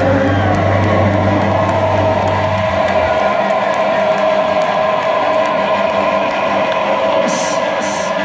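Heavy metal band letting its final chord ring out live, with a crowd cheering: the low bass drops out about three seconds in while a sustained guitar tone keeps ringing.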